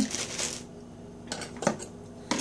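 Plastic bag of frozen peas being handled, giving a few short crinkles and clicks about a second and a half in.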